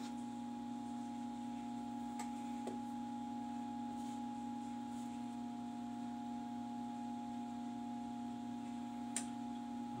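Steady electrical or mechanical hum, a low tone with a higher whine over it, unchanging throughout, with a few faint light clicks about two seconds in and again near the end.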